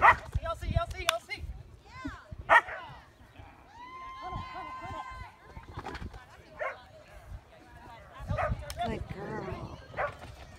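Dog barking and yipping in excited bursts as it runs an agility course; the loudest barks come right at the start and about two and a half seconds in.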